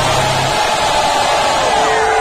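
Live hip-hop concert sound over the PA: the beat's bass drops out about half a second in, leaving a long held note that slides slightly lower and steps down near the end.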